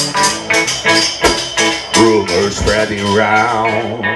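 Live band music: strummed acoustic and electric guitars over a steady quick beat of sharp hits, about four a second. Near the end, a voice sings with a wavering pitch.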